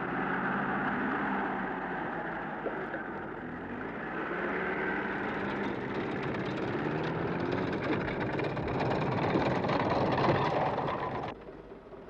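Engine of an open jeep-type utility vehicle driving on a dirt road, its pitch rising and falling as it changes speed. The sound stops abruptly near the end.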